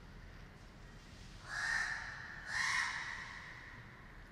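A crow cawing twice, two harsh calls about a second apart.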